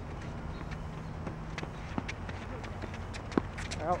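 Tennis ball struck by rackets and bouncing on a hard court: a few sharp, spaced-out knocks, the loudest a little over three seconds in.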